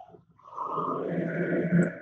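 Crowd of thousands of basketball fans in a packed arena cheering, a dense steady mass of voices coming in about half a second in, heard through the shared audio of a video call.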